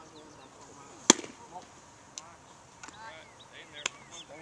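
A pitched baseball popping into the catcher's leather mitt: one sharp, loud smack about a second in. A smaller click follows near the end, under faint voices and short high chirps.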